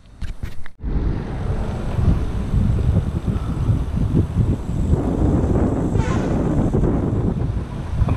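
Wind buffeting the microphone of a camera on a moving bicycle: a loud, uneven low rush that starts suddenly about a second in, after a few light clicks.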